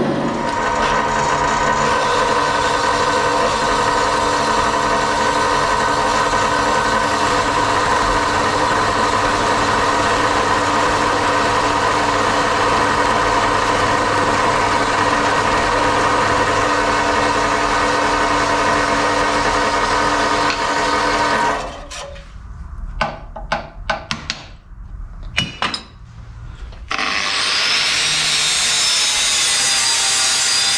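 Horizontal metal-cutting bandsaw running and cutting steel bar, a steady hum with a strong ringing tone, for about twenty seconds before it stops. A few seconds of knocks and clanks of metal being handled follow, then an angle grinder starts grinding steel near the end.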